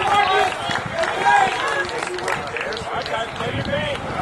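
Indistinct voices of several people talking and calling out, overlapping, with no clear words.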